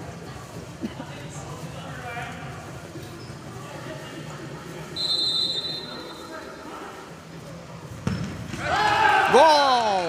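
Indoor futsal free kick: a referee's whistle sounds once for about a second midway through. About eight seconds in the ball is struck with a sharp knock, followed at once by loud shouting from players and spectators as it goes in.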